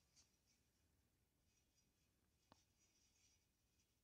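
Near silence: a pause in the talk, the track almost empty apart from one very faint click about two and a half seconds in.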